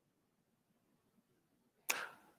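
Near silence, then a single short sharp click near the end.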